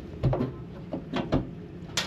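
Small hinged access door on a boat's helm console being swung shut, giving a few soft knocks and clicks with a low thump partway through and a sharper click at the end.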